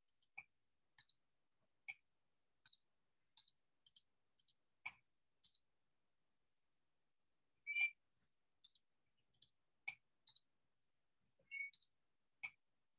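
Scattered, irregular clicks of a computer keyboard and mouse in near silence, roughly one or two a second, with a pause of about two seconds midway and one louder click just before the eight-second mark.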